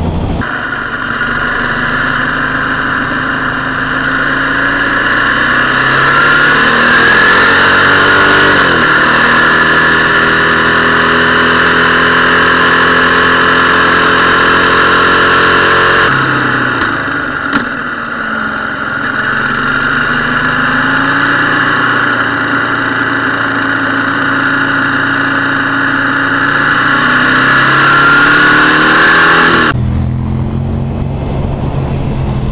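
Motorcycle engine running on the move, its revs rising and falling, with a steady rush of wind on the microphone.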